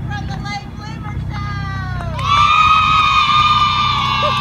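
A group of children's voices calling out, then, about halfway through, a loud, long shout held together in unison, falling slightly in pitch. A steady low hum runs underneath.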